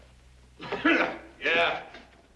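A man clearing his throat, a two-part "ahem" about half a second in, to get attention.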